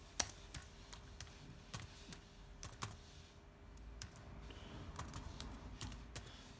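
Faint keystrokes on a Lenovo laptop keyboard, typed in irregular spurts of sharp clicks with a short lull about three seconds in.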